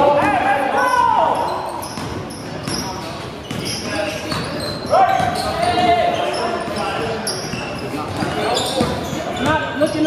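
Live basketball play on a hardwood court: a ball being dribbled among scattered short knocks and squeaks, with players shouting briefly near the start and again about five seconds in.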